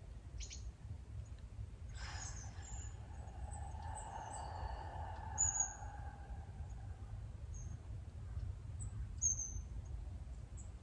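Small woodland birds chirping, short high calls scattered through, over a steady low rumble. About two seconds in, a long slow breath lasting about five seconds fades away.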